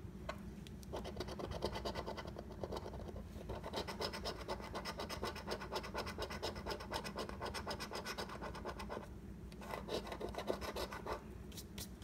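A coin scratching the coating off a paper scratch-off lottery ticket in rapid back-and-forth strokes, stopping briefly about nine seconds in before a last short run of scratching.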